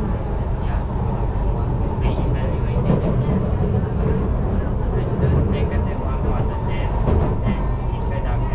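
Singapore East West Line MRT train running at speed, heard from inside the carriage: a steady low rumble of wheels on rail with a constant hum over it.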